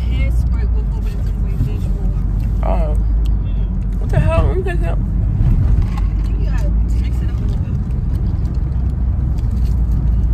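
Steady low rumble of a car's engine and tyres heard from inside the cabin while driving, with a few brief snatches of voice over it.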